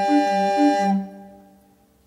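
Background music: a held chord over a low two-note figure that alternates about four notes a second, stopping about a second in and dying away.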